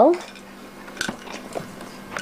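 A few light clicks and knocks of plastic baby toys being handled, about a second in, over a faint steady hum.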